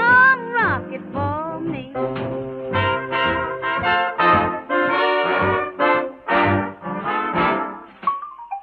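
Swing big-band brass section of trumpets and trombones playing an instrumental passage on a 1938 jazz recording. It opens with a rising bend into held chords over a steady bass beat.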